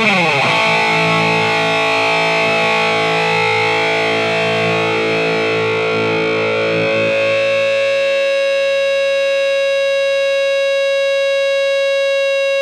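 Electric guitar played through the E-Wave DG50RH all-tube amp head with heavy distortion. A fast lead line ends in a quick downward slide into a long held note that rings on. About seven seconds in, one tone in it grows stronger as the rest fade.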